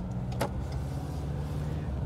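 Cabin noise inside a moving 2018 Ford Ranger Raptor: a steady low drone from its 2.0-litre bi-turbo diesel engine and the road, with a single short click about half a second in.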